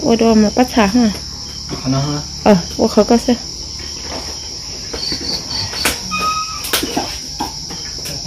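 Steady chorus of crickets trilling. Two sharp knocks a little past the middle come from a cleaver striking a wooden chopping block.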